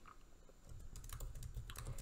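Faint typing on a computer keyboard: a quick, irregular run of keystrokes.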